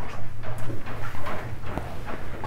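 Rustling of foul-weather gear and a few light knocks as a person shifts and gets up from the cabin floor, over a steady low hum.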